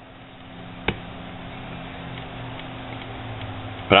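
Aluminium antenna tubing being handled on a desk: a single sharp click about a second in, over a steady low hum.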